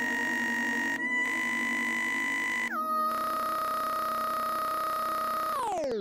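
Steady electronic synthesizer tones held on one high pitch over a low drone. About three seconds in they step down to a lower pitch, and near the end the whole sound glides steeply down in pitch.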